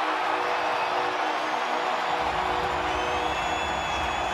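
Large stadium crowd cheering a touchdown as a steady din, with held musical tones over it. A low rumble joins about halfway through, and higher tones come in near the end.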